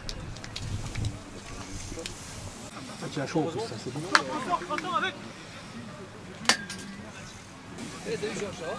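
Footballers' voices talking faintly and overlapping, with a short 'ah' from someone close by. A single sharp knock comes about six and a half seconds in.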